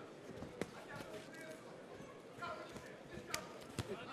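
A few sharp, isolated thuds from the kickboxing bout in the ring, about three of them, under faint shouting voices from around the ring.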